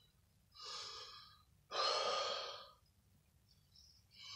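A man's heavy breaths while crying, two of them, about half a second and two seconds in, the second louder.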